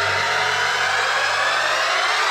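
Dramatic TV-serial background score: a sustained low drone under a dense swell that rises in pitch.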